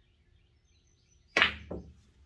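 A pool cue tip striking the cue ball with a sharp click about one and a half seconds in, low and left of centre for draw with left English, followed a moment later by a second, softer knock of the ball.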